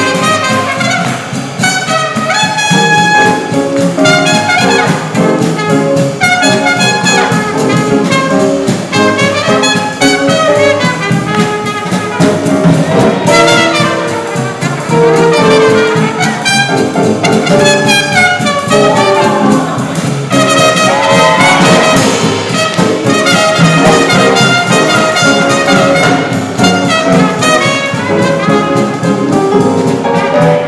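Live big band playing swing jazz, with trumpets, trombones and saxophones over a steady rhythm section.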